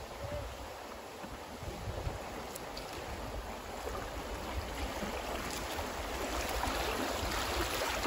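River water flowing, a steady rushing wash that grows a little louder toward the end.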